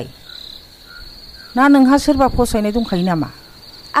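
Crickets chirring steadily in the background, a continuous high trill. A woman's voice speaks over it for about two seconds in the middle and is the loudest sound.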